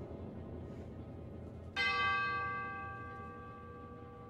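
Orchestral bell struck once, just under two seconds in, over a low, quiet sustained orchestral texture; its tone rings on and fades slowly.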